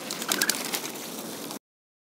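Birds calling, with a few sharp clicks in the first second, before the sound cuts out abruptly about one and a half seconds in.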